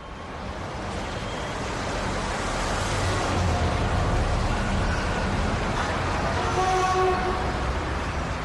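City street traffic: a steady rumble of passing vehicles that swells in the middle, with brief pitched whines about three seconds in and again near the end.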